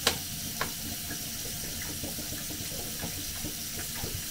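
Kitchen tap running, water pouring into a plastic bottle held under the stream, with a couple of light knocks near the start.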